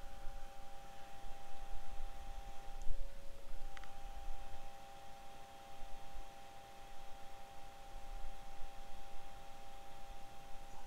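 A steady electrical whine of two mid-pitched tones from the soldering bench equipment, with soft low bumps from handling, a light tap about three seconds in and a small click about a second later as tools touch the board.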